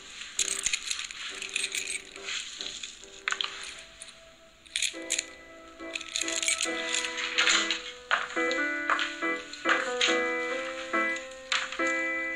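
A string of beads rattling and clicking in a hand in several short bursts, over soft music whose notes grow busier near the end.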